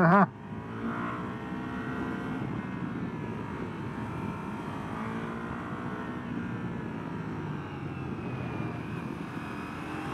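Ducati Multistrada V4 Pikes Peak's 1158 cc V4 Granturismo engine running in second gear on the road, its pitch rising and falling gently with the throttle, over wind noise.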